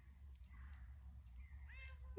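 Near silence with a steady low hum, and a faint, high kitten mew near the end.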